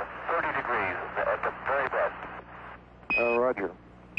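Crackly, narrow-band space-to-ground radio voices, followed a little after three seconds by a short high beep, the Quindar tone that keys a Mission Control transmission.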